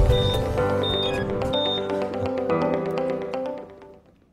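TV programme's opening theme music with sustained tones and a few short high pings, fading out near the end.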